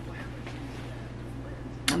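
Low, steady background hum with faint room tone, then a sharp click near the end just before a woman starts speaking.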